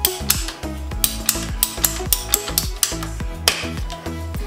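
Ratcheting hand pipe cutter clicking as it is worked through a plastic pipe: a run of sharp, uneven clicks, over background music.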